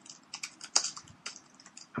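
Typing on a computer keyboard: a quick, irregular run of key clicks, with one louder keystroke a little under a second in.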